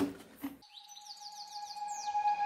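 Thin plastic bottle crackling briefly as it is squeezed. About half a second in, the room sound cuts out and gives way to a steady tone with quick, repeated falling bird-like chirps, the lead-in to added music.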